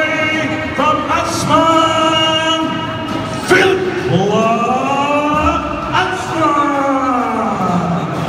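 A person singing long, held notes that slide up and down in pitch, loud over the hall.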